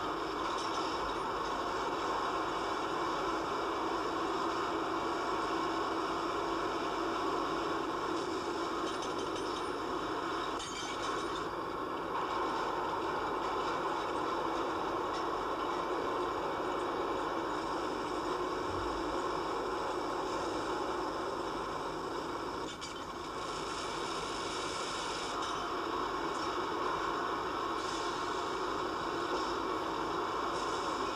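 Steady drone of a heavy crane's engine and winch at a dynamic compaction site, running evenly. A brief low thump comes a little past the middle.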